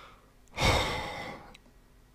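A man's sigh, a long breath out close to the microphone, starting about half a second in, loudest at first and fading away over about a second.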